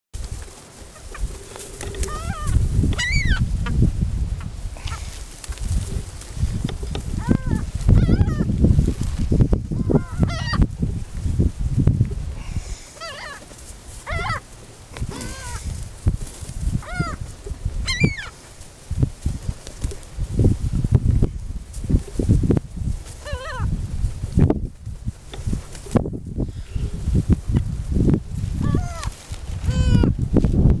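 Gulls calling over and over, short cries that rise and fall in pitch, coming every second or two, over a constant low rumble of wind on the microphone.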